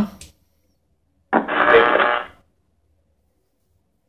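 Skullcandy Air Raid Bluetooth speaker playing its short power-on chime, a musical tone of about a second that starts just over a second in.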